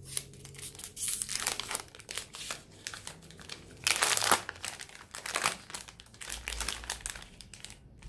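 A chocolate bar's red outer wrapper and inner foil crinkling and tearing as it is unwrapped by hand, in an irregular run of rustles and crackles, loudest about four seconds in.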